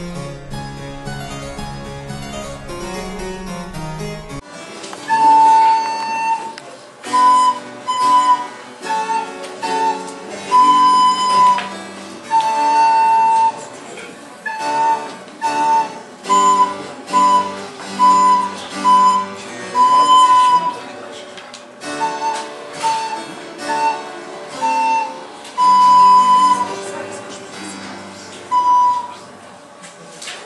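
A child playing a simple tune on a recorder in short, separate notes, over a harpsichord accompaniment. Harpsichord music alone fills the first few seconds before the recorder comes in.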